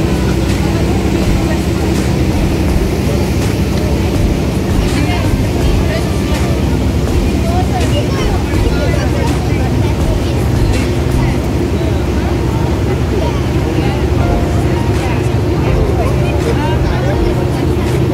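Steady low drone of a passenger boat's engine with rushing water noise, and faint passenger chatter throughout.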